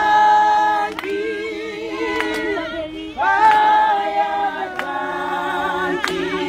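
A group of women singing unaccompanied, several voices together in harmony holding long notes, with a new phrase starting about three seconds in.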